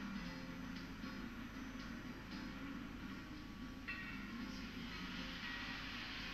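Background music played through a television's speaker, with a higher note coming in about four seconds in.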